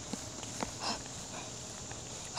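Quiet outdoor background with a few faint, short ticks in the first second and a brief soft sound just before the middle, consistent with plush toys being handled close to the microphone.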